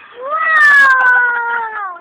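A young boy's voice holding one long, loud, high wail that slowly falls in pitch, lasting nearly two seconds.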